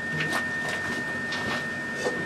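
Electric air blower of a homemade propane forge running steadily, pushing air through the recuperator to the burner, with a constant thin high whine over its rushing noise and a few faint clicks.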